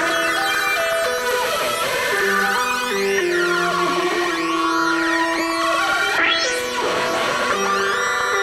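Electronic music track made in Reason 2.5: layered synthesizer chords changing in steps, with filter sweeps that rise and fall through them, constantly moving and really dynamic.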